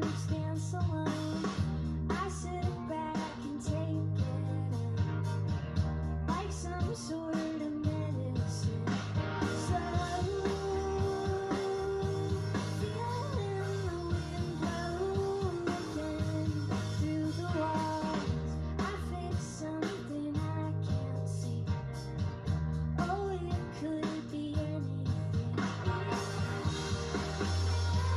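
Indie rock band playing live: a woman sings lead over electric guitars and a drum kit, with a steady beat throughout.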